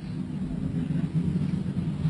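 A low, steady hum that grows slightly louder.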